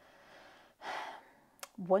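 A person drawing a short breath about a second in, followed by a small mouth click as speech resumes near the end.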